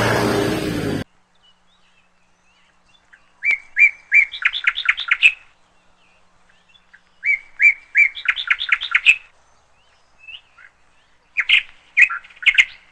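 Music cuts off abruptly about a second in. Then a songbird sings the same phrase twice, three even chirps followed by a fast run of higher notes, with a shorter burst of chirps near the end.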